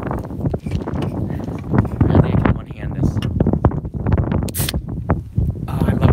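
Wind buffeting the phone's microphone in uneven low rumbles, with a short sharp hiss about four and a half seconds in as the pull-tab of an aluminium beer can is opened.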